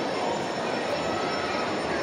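Steady, indistinct background din of a busy indoor public space, with no clear voice standing out.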